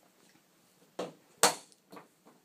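Sharp clicks from a handheld laser pointer's push button: two about half a second apart beginning about a second in, the second the louder, then a fainter one near the end.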